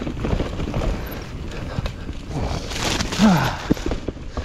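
Mountain bike ridden down a dirt singletrack: tyres rolling over dirt and roots with a constant rattle of knocks and clicks from the bike, over wind rumble on the microphone. Just before three seconds there is a louder rush of noise, then the rider lets out a short falling grunt.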